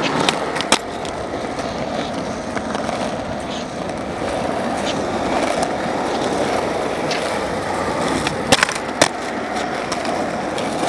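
Skateboard wheels rolling over rough asphalt, a steady grinding roll. Sharp clacks of the board on the pavement come twice in the first second and twice more close together near the end, as tricks are popped and landed.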